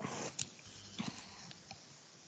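A pause between spoken phrases: faint hiss on the call line, fading away, with a couple of small clicks about half a second and a second in.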